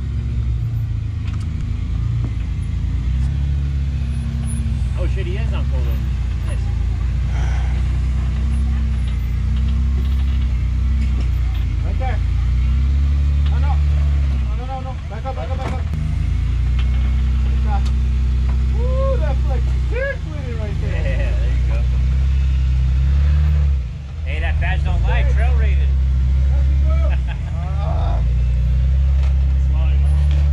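Jeep Wrangler engine running at low revs while crawling over boulders, its pitch rising and falling with the throttle and easing off briefly three times, about halfway through, two-thirds through and near 24 s. Voices can be heard faintly over it.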